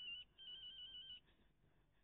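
A telephone rings with a warbling electronic trill, in two short bursts: one cuts off just after the start, and a second about half a second later lasts under a second.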